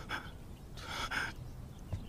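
A person's sharp, breathy gasps: a short one at the start and a longer double gasp about a second in.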